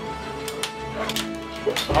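Background music with steady held tones, over which come a few sharp plastic clicks from a hand-held Lego stud-shooter launcher being twisted.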